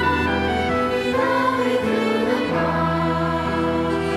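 Children's choir singing held notes in harmony, accompanied by violins and other bowed strings.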